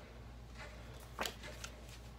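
Tarot cards being handled: a few soft rustles and flicks of card stock, the loudest about a second in, over a steady low hum.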